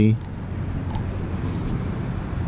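Steady low background rumble of distant road traffic, with no single event standing out.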